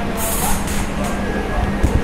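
Steady room noise with a low hum and rumble, and a brief high hiss just after the start.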